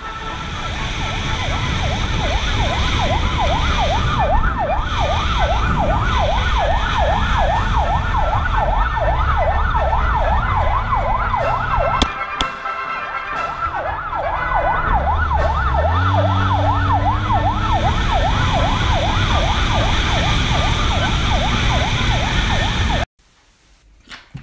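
Emergency-vehicle siren sounding a fast yelp, its pitch sweeping up and down several times a second, over the low steady sound of car engines. The siren breaks off briefly around the middle while an engine revs up, and everything cuts off suddenly about a second before the end.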